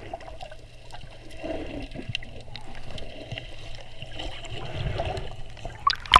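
Muffled underwater water noise heard through a camera held below the surface, stirred by hands working a plastic bag of peas. There are scattered faint clicks, and a short, louder crackle right at the end.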